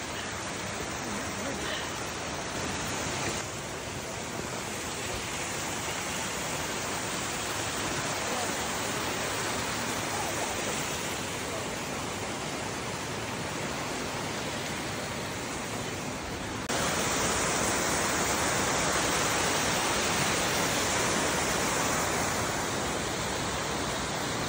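Steady rush of a rocky creek flowing over stones, turning suddenly louder about 17 seconds in.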